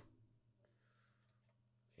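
Near silence: a faint steady hum with a few soft computer-mouse clicks about half a second to a second in.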